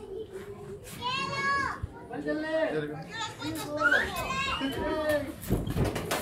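High-pitched children's voices shouting and calling out from the ringside crowd, loudest about four seconds in. A thump comes near the end.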